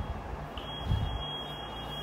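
A single steady high-pitched tone starts about half a second in and holds, over a low background rumble.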